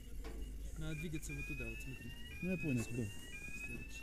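A high electronic alarm tone that rises slightly in pitch and restarts about once a second, beginning about a second in, with a man talking over it.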